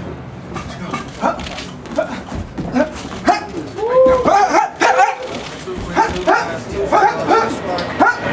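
A boxer's sharp breaths and grunts, one after another as he throws punches while shadowboxing, with a run of louder voiced grunts about four to five seconds in.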